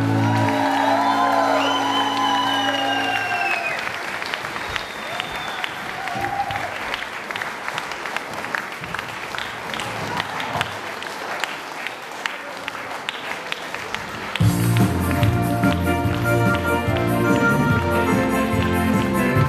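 Audience and cast applauding at a curtain call. Music plays over the first three seconds, then only clapping, then music starts again about 14 seconds in.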